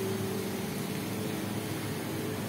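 Steady machine hum: a constant low drone with an even hiss, as of an electric fan or ventilation unit running.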